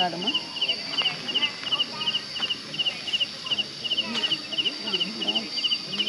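Crickets chirping steadily: short trilled chirps about three times a second over a constant high insect buzz, with faint voices in the background.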